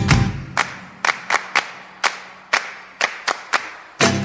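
Music cuts off, and about nine sharp percussive hits follow in an uneven rhythm, each ringing briefly, over a faint steady hum; music starts again at the end.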